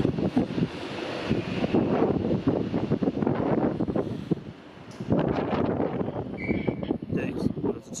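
Northern Class 150 diesel multiple unit pulling away and running off over the pointwork, its engine and wheel noise fading into the distance, with wind buffeting the microphone.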